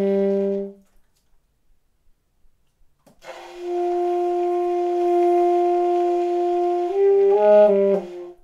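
Solo alto saxophone, improvised: a held note breaks off within the first second. After a pause of about two seconds comes one long steady tone of about four seconds, then a few short notes stepping upward near the end.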